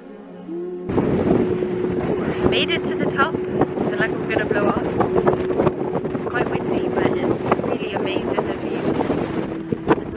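Strong wind blowing across the microphone, a loud rushing noise that cuts in about a second in and carries on under a woman's voice. A soft ambient music drone ends as the wind starts.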